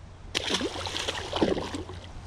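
A largemouth bass dropped back into a lake, hitting the water with a splash about a third of a second in, followed by the water sloshing for more than a second.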